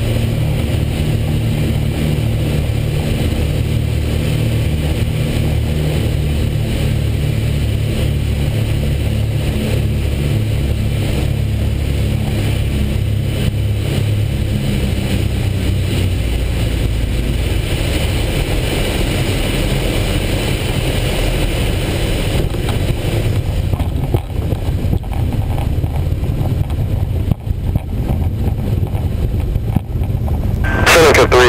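Piper Seneca II twin-engine piston aircraft heard from inside the cockpit while landing: a steady drone of both engines and propellers, its low note changing about halfway through as power comes back, with a few brief dips in loudness near the end as the aircraft is on the runway.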